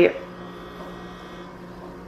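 Refrigerator running with a steady hum.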